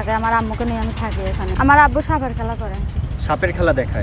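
A woman talking, over a steady low rumble.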